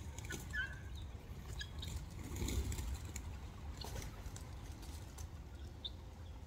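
Helmeted guineafowl giving a few soft, short calls in the first second, over a steady low rumble and scattered light clicks.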